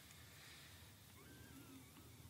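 Near silence: faint room hiss, with a thin, faint wavering high tone in the second half.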